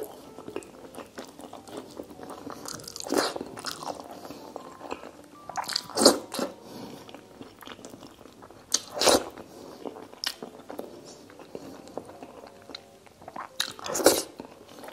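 Close-miked chewing and wet mouth sounds of a person eating rice and braised pork by hand. The chewing runs on steadily, with louder bursts about three, six and nine seconds in and again at the end.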